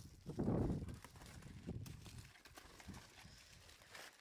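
Dull low thuds and scuffing of someone working by hand and with a wooden stick in dry earth and plants. The loudest thud comes about half a second in, with softer knocks later.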